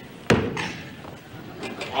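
Ice axe struck down into the floor: one sharp blow about a third of a second in.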